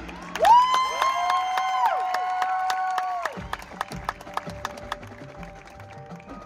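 Marching band show music in a quiet passage: two sustained tones slide up into long held notes and bend down again, over a run of light, regular clicking percussion.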